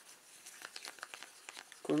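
Faint scattered scrapes and light clicks of a stick stirring thick glue mixed with grey thermochromic pigment in a small plastic cup.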